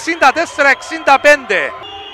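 Commentator speaking Greek over the game, calling out the score, with a short pause near the end.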